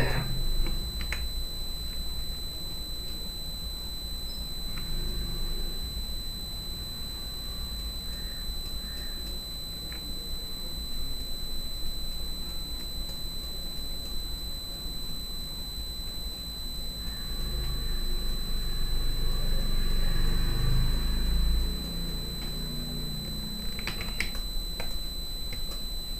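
Soft, sparse clicks of a computer mouse and keyboard over a steady high-pitched electronic whine and low hum. A faint low murmur swells for a few seconds about two-thirds of the way in.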